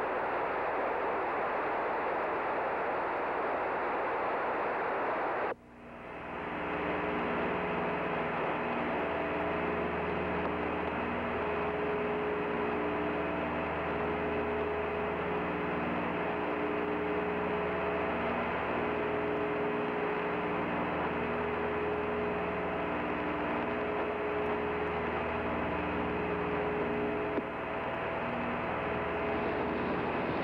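Steady static hiss from an open radio or broadcast line. About five and a half seconds in it cuts out abruptly and is replaced by a different hiss carrying a steady hum of several tones, with low tones that come and go every couple of seconds.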